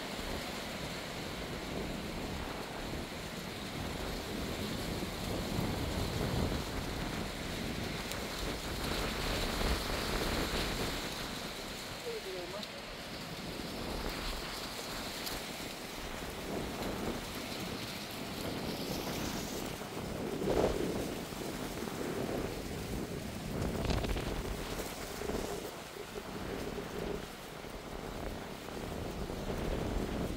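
Wind buffeting the microphone: a steady rushing noise with an uneven low rumble that swells and eases.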